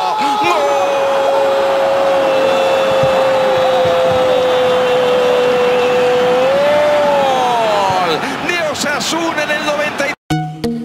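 A Spanish-language football commentator's long drawn-out goal shout: one held note lasting about seven seconds that lifts briefly near the end, then falls away into excited talk.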